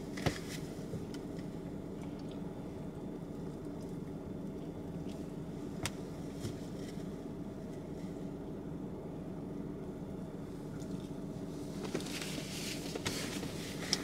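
Steady low hum of a car idling, heard inside the cabin, with quiet chewing and a couple of sharp clicks, one near the start and one about six seconds in.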